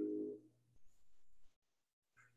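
Upright piano's final chord ringing and fading away over about half a second, followed by near silence.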